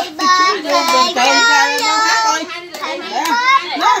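A young boy singing a Vietnamese children's song in held, sung notes, the word 'bông' recurring. A few hand claps fall among the notes.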